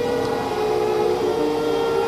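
Electronic music: a held synthesizer chord of steady mid-pitched tones, one note sustained while a lower note shifts partway through.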